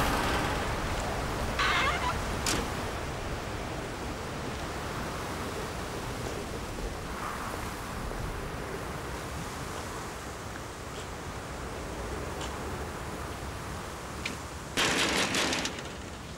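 Steady outdoor street background noise, an even hiss like distant traffic, loudest at the start and settling after a few seconds. A brief burst of clatter comes shortly before the end.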